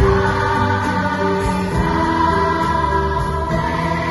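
A massed school choir singing with a small band accompanying, the voices coming in right at the start over the instrumental.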